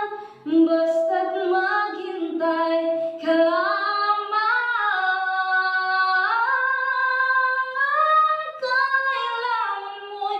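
A woman singing a slow Tagalog ballad, holding long sustained notes.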